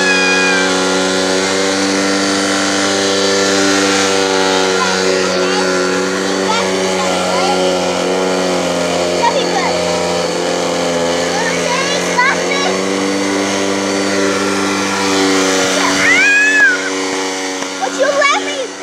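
A canister vacuum cleaner running with a steady, even hum. A baby's high squeals rise over it at the very start and again near the end.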